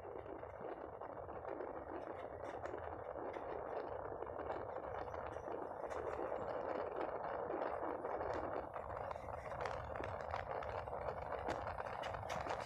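Moving passenger train heard from an open coach doorway: a steady rush of wind and wheels running on the track, with faint rattling clicks, slowly getting louder.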